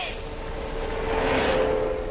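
Vehicle sound: a steady rush of road noise with a low, even hum.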